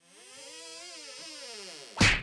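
Synthesized intro sting: a single wavering electronic tone that fades in, glides up in pitch and then back down over about two seconds.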